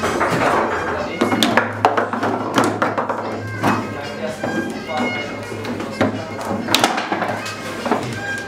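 Table football in play: irregular sharp clacks as the ball is struck by the rod figures and knocks against the table. A quick run of clacks comes in the first four seconds and a sharp one near the end, over background music.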